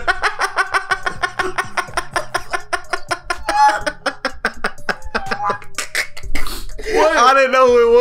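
Two men laughing hard, a long run of rapid ha-ha-ha pulses for about six seconds, then a drawn-out voiced laugh or exclamation near the end.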